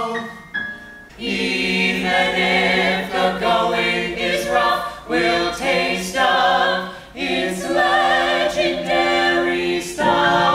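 Small ensemble of mixed male and female voices singing held notes in harmony, coming in about a second in after a brief pause.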